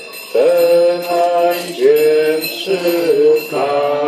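Voices singing a slow Polish Eucharistic hymn in unison, in phrases of long held notes.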